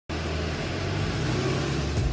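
School bus's engine running steadily at the curb: a low, even drone under a wide rush of noise.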